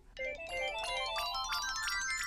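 A twinkling musical sound effect: quick bell-like notes climbing upward in overlapping runs, the magic cue as the red cupboard doors swing open.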